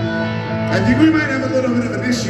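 Live rock band's electric guitars ringing on a held chord through a stadium PA. A voice comes in over it about three quarters of a second in.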